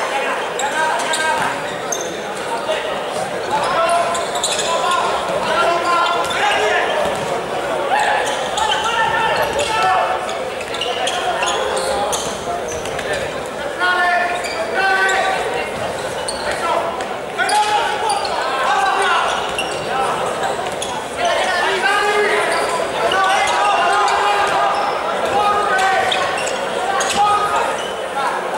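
A futsal ball being kicked and bouncing on a wooden indoor court, among players' shouts and calls that echo around a large sports hall.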